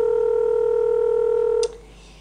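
Telephone ringback tone on an outgoing call just dialled: one steady ring tone that cuts off a little before the end, the line ringing at the other end before it is answered.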